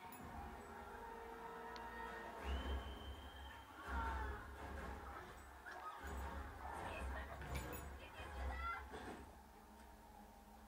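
English Springer Spaniel puppy giving short squeaky whines and yips, with one longer high whine about two and a half seconds in, while play-fighting with a Great Dane. Low bumping and rustling come from the tussle.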